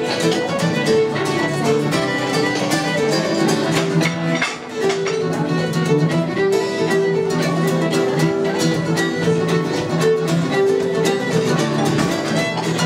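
Fiddle playing a traditional Irish reel with quick running notes, with a second instrument accompanying.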